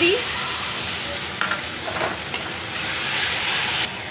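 Tomato purée sizzling in hot oil in a steel kadhai, stirred with a steel spatula. The sizzle cuts off suddenly near the end.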